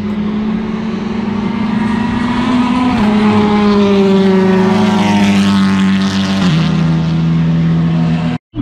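TCR touring car racing down the straight. Its engine note climbs, then steps down about three seconds in and again later as it shifts up, and it is loudest as it passes.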